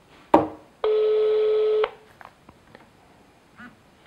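Telephone ringback tone heard over the line as an outgoing call rings: one steady tone about a second long, following a short sharp sound near the start.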